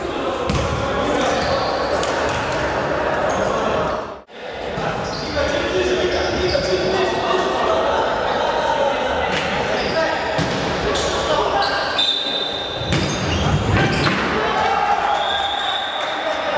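Live sound of an indoor futsal game in a large hall: players' voices calling out and the ball knocking on the wooden floor, with echo. The sound drops out briefly about four seconds in.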